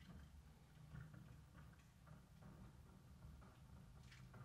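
Near silence: faint room tone with a low hum and a few faint, irregular ticks.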